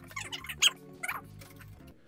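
Background music with sustained notes, with a few light taps of a knife on a cutting board.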